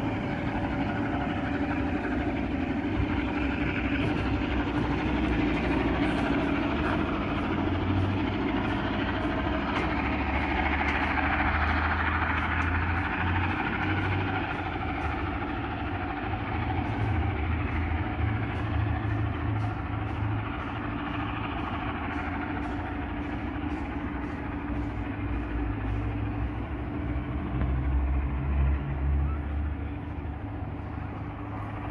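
Steady rumble of a heritage passenger train pulling away along the line.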